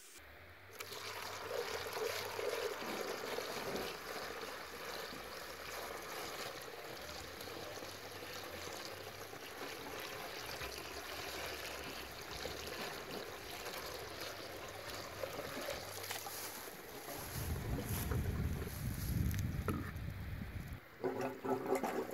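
Water poured steadily into a plastic funnel and running down a PVC cleanout pipe, washing foaming root killer into a root-clogged leach field line. The pour has a deeper rush in the last few seconds.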